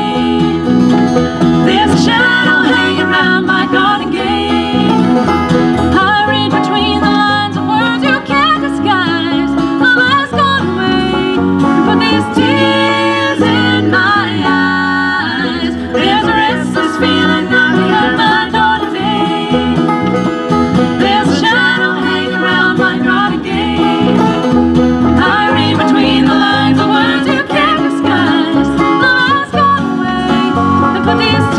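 Live bluegrass band playing a tune, with banjo, fiddle and acoustic and electric guitars together, at a steady full volume.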